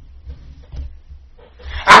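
A pause in a man's loud, impassioned speech with only a steady low hum underneath. His voice comes back loudly near the end.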